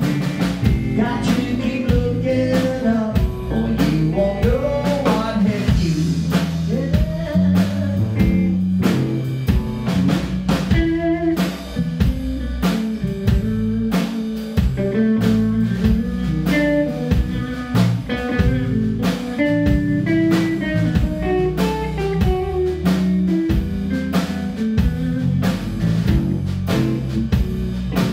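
Live blues band playing: electric guitars over a steady drum-kit beat, loud and continuous.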